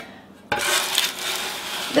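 Stainless steel bench scraper dragged across parchment paper, pushing up a ridge of dripped candy coating: a steady scraping noise starting about half a second in.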